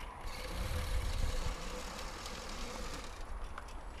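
Wind buffeting the microphone, a low, uneven rumble.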